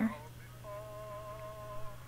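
A woman softly humming one slightly wavering note with her mouth closed, lasting about a second and starting about half a second in.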